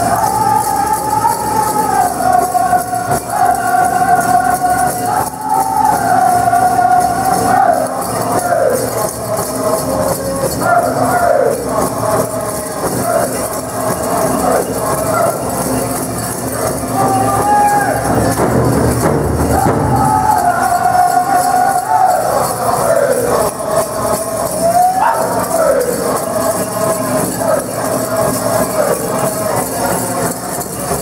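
Powwow drum group singing a fancy dance contest song: high voices in repeated phrases that step down in pitch over a steady drum beat, with the jingle of dancers' bells. The singing breaks off briefly past the middle while the drum carries on, then the song resumes.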